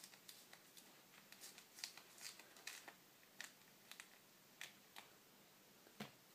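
Mandarin peel being pulled away from the fruit by hand: faint, irregular crackles and small tearing sounds, a couple a second.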